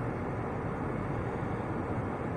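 Steady background noise inside a car's cabin: an even low rumble and hiss, with no distinct events.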